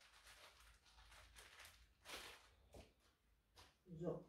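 Near silence with faint rustling of napkins being handled, a few short rustles with the clearest about two seconds in.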